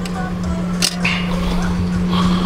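A steady low hum under background music, with a single sharp knock a little under a second in.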